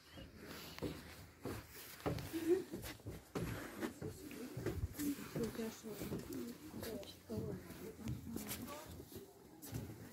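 Quiet, indistinct talk between nearby people, the words not made out, with a few light knocks in between.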